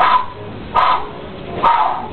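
A dog barking, three short barks less than a second apart.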